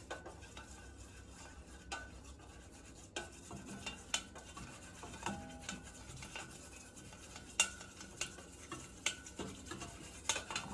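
Thin wooden stirrer scraping and tapping against the inside of a stainless steel bowl while stirring melting oil and butters in a double boiler, as a run of faint, scattered clicks. The sharpest click comes about three quarters of the way through.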